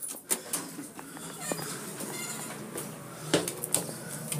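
Elevator push buttons being pressed, giving a few sharp clicks; the loudest comes near the end as the basement-level button is pushed.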